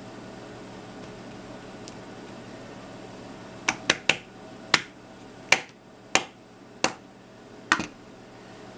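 Low steady room hum, then, from about halfway, a run of about nine sharp, irregularly spaced clicks or taps of a hard object.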